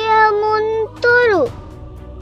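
A child's reciting voice holding one long drawn-out note, then a short note that slides steeply downward about a second in, with soft background music that carries on alone afterwards.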